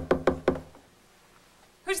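Knocking on a door: four quick raps within about half a second.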